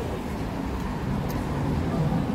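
Steady city street traffic noise: a low rumble of passing cars with a hiss over it.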